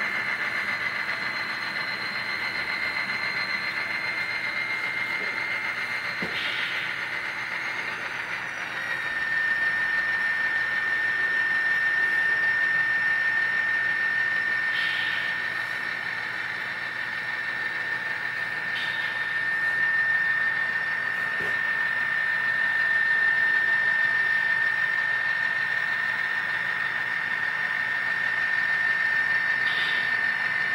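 N scale Atlas GP39-RN model diesel locomotive running along the track, its small motor giving a steady high whine. The whine drops slightly in pitch a little over eight seconds in.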